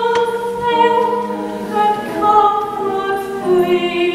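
A woman singing slow, long-held notes with piano accompaniment, the notes changing every second or so.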